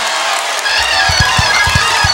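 Live church band music: held keyboard or organ chords, with drum hits coming in about half a second in and repeating several times a second.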